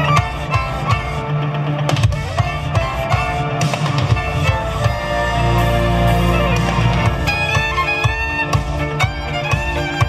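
Three violins playing a fast rock tune together, with sliding bowed lines, over a backing track that carries a heavy bass and a beat.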